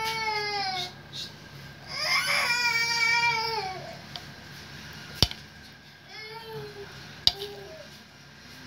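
A baby crying in long, drawn-out wails: three cries with pauses between them, each falling off at its end, the last one weaker. Two sharp clicks come about five and seven seconds in.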